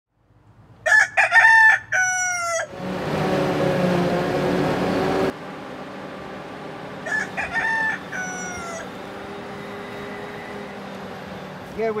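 A rooster crows loudly about a second in and again, more faintly, about seven seconds in. Between the crows a machine runs with a steady hum that cuts off suddenly about five seconds in, and a fainter hum carries on after it.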